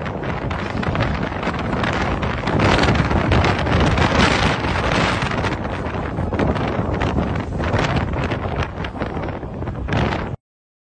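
Wind buffeting the phone's microphone, a loud rough rush that swells in the middle.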